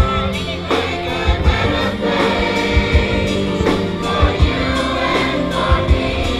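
Live choir singing with a string orchestra, sustained chords over a steady beat.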